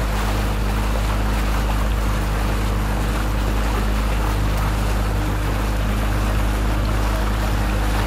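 Small tour boat's motor running at a steady speed, a low even hum, with water rushing along the hull.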